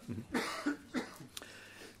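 A person coughing briefly about half a second in, followed by low room noise and a faint click.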